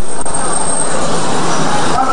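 Steady, loud rushing background noise with no clear individual sounds.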